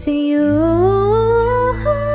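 A cappella group singing: one voice slides steadily upward in pitch over about a second, while a low sustained bass part comes in about half a second in and holds beneath it.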